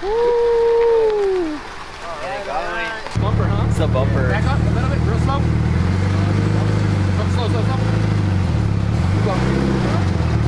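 Mitsubishi Lancer Evolution's engine idling with a deep, steady note as the car is eased slowly onto a trailer; it dips and picks up again near the end. Before it, a loud steady two-note tone falls away after about a second and a half.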